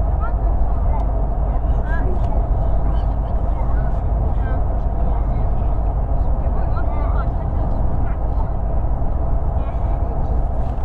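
Steady low road and engine rumble heard from inside a vehicle travelling at highway speed.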